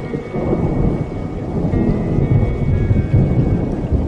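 Thunder rumbling low and irregularly under a background music track.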